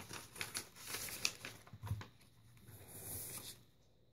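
Soft paper rustling and small clicks as cards and the pages of a spiral-bound paper journal are handled and turned.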